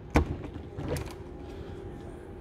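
Latch of a motorhome's outside garage door clicking as it is turned and released, with a second, lighter click about a second later as the door swings open. A steady low hum runs behind.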